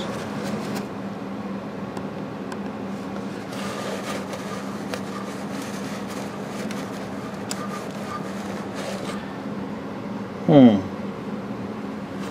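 Faint rubbing and handling noises of a shop rag wiping gloppy old residue off the crankshaft of an antique Briggs & Stratton engine, over a steady low hum. A man's short falling "hmm" about ten and a half seconds in.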